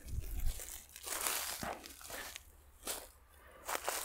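Dry leaf litter and twigs crunching and rustling underfoot in several short, irregular bouts, with one sharp click about three seconds in.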